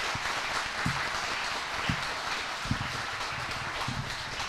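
Audience applauding, a steady clatter of many hands clapping.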